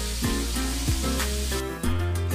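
Chicken skewers sizzling on an electric tabletop grill, under background music with a steady beat; the sizzle drops out near the end.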